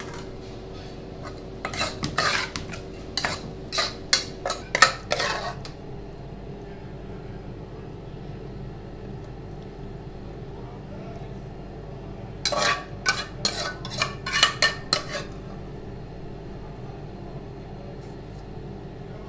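A large metal spoon clinking and scraping against an aluminium saucepan as minced chicken salad is mixed and scooped, in two bursts of quick knocks, the first about two seconds in and the second about twelve seconds in. A steady low hum runs underneath.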